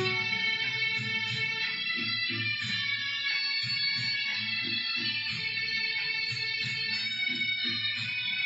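Instrumental music: a violin played over a karaoke backing track, with plucked, guitar-like strings keeping a steady rhythm underneath.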